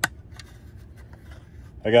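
Hands handling a plastic scale-model pickup truck: one sharp click at the start, then faint light ticks and rubbing.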